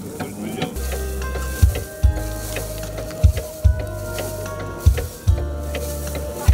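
Crackling, rattling grain-stripping noise from a pedal-operated rice thresher as rice stalks are held against its spinning toothed drum. Under it, music with a heavy bass beat comes in about a second in and becomes the loudest sound.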